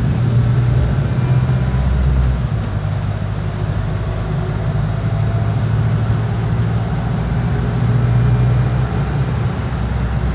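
Steady low engine drone and running rumble of a Go-Ahead London double-decker bus, heard from inside the passenger saloon. The drone swells briefly near the end, then eases.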